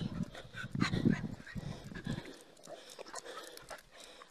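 Street dogs making small sounds close to the microphone, over a low rumbling noise that fills the first two seconds and then dies away.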